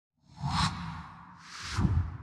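Logo-reveal sound effect: two whooshes about a second apart, the second swelling louder with a low rumble under it and then dying away.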